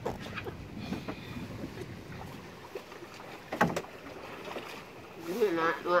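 A small wooden outrigger boat being poled and paddled along a river: a low wash of water around the hull, with one sharp knock about three and a half seconds in.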